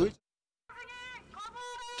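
Speech cuts off into a brief dead silence. About two-thirds of a second in, a faint, high-pitched voice is heard: a call or shout that glides at first and then holds one pitch, lasting about a second.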